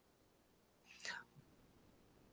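Near silence in a pause of speech, broken about a second in by one faint, brief breathy sound from the lecturer at his microphone.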